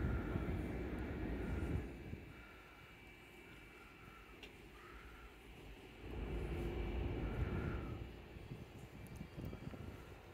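Wind buffeting the microphone on an open upper deck of a cruise ship: a low rumble in two gusts, one at the start and one from about six to eight seconds in, with quieter air between. Faint short chirps come and go throughout.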